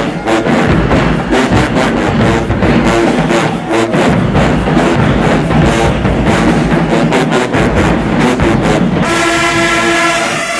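HBCU-style marching band playing loudly: sousaphones, trumpets and trombones over dense drumline strokes. About nine seconds in the drums drop out, leaving the brass holding chords.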